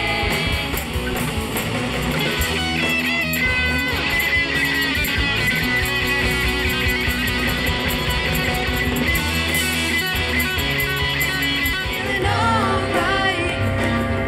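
Live rock band playing an instrumental passage, with several electric guitars over bass and drums, amplified through a PA in a gymnasium.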